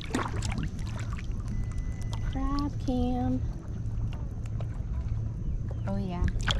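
Steady low wind rumble on the microphone over faint water sloshing and gurgling, with a few small clicks and a short burst of voice a little after the middle.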